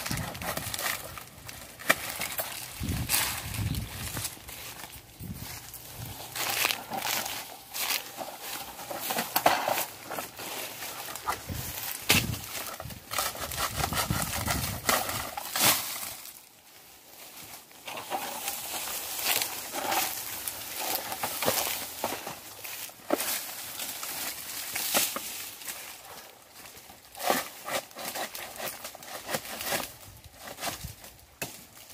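Malayan dwarf coconuts being picked by hand from a low palm: dry fronds and husks rustle, with many sharp cracks and knocks as the nuts are pulled from the bunch and handled, and a brief lull about halfway.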